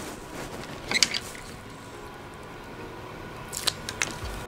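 Hands handling small plastic parts in a plastic electronics enclosure, with a sharp click about a second in and another near the end, over a steady hiss of room tone.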